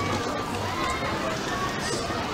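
Outdoor crowd ambience: many people talking at once, with footsteps on paving.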